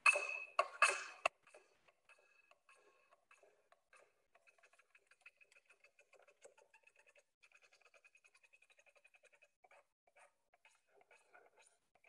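Knife blade scraping the outer surface of an HDPE drainage pipe, shaving off the oxidised skin before electrofusion: three loud rasping strokes at the start, then a long run of faint, quick scratches.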